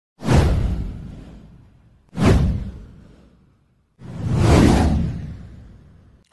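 Three whoosh sound effects for an animated title intro, about two seconds apart. The first two hit suddenly and fade away; the third swells up over about half a second before it fades.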